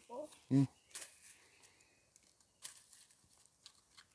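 Faint, brief scrapes of a knife blade stripping bark from a stick, one about a second in and another near three seconds, after a short hummed 'mm' from a voice.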